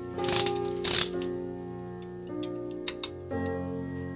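Two short, loud scrapes in the first second, a thin metal pick scraping residue out of the empty nut slot of a guitar neck, followed by a few faint ticks near three seconds. Soft piano music plays throughout.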